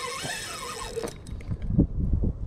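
A Penn Battle III spinning reel cranked fast to take up line, giving a whirring squeal for about a second, then a few low knocks of rod and reel handling.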